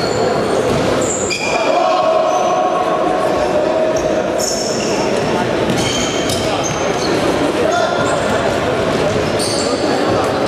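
Futsal game in an echoing sports hall: the ball being kicked and bouncing on the court, sneakers squeaking briefly on the floor again and again, and players calling out, with one long shout about a second in.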